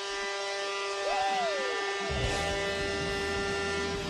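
Arena goal horn blowing one long, steady, buzzy note to mark a home-team goal, cutting off right at the end, with a short rising-and-falling cry over it about a second in.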